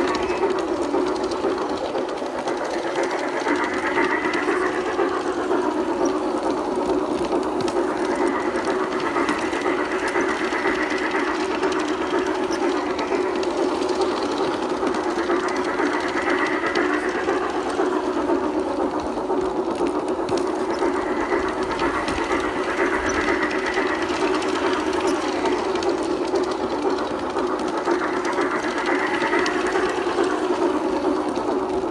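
Toy Christmas train running on its track: a steady electric motor and gear whir with a fainter upper tone that swells and fades every several seconds.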